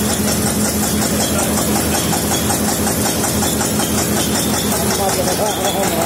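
Belt-driven mustard oil expeller mill running steadily, the machinery keeping up a fast, even knocking beat.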